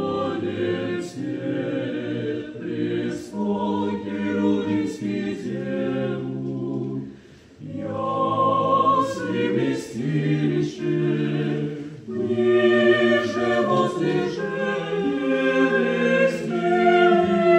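Small mixed Orthodox church choir singing liturgical music a cappella in several parts. There is a brief pause about seven and a half seconds in, then the singing resumes and is louder in the last few seconds.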